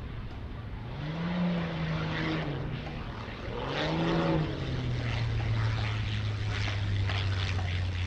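Single-engine aerobatic propeller plane's engine and propeller. The pitch rises and falls twice as it passes low over the runway, then settles to a steady low drone, throttled back as it touches down.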